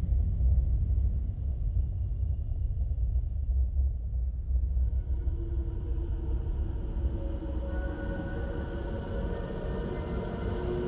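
Film soundtrack opening: a deep, steady rumble, with sustained held musical notes coming in about halfway through.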